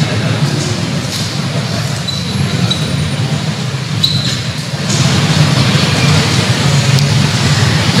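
A steady low rumble that grows a little louder about five seconds in, with a few brief faint squeaks of a marker writing on a whiteboard around two and four seconds in.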